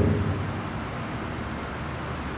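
Steady, even background noise with no distinct events: the room's ambient hum and hiss during a pause in speech, as the last of a man's voice fades in the first half second.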